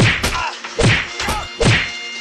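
Punches and kicks landing in a staged beating, dubbed as hard whack sound effects: three heavy blows about 0.8 s apart, each followed by a short pained grunt.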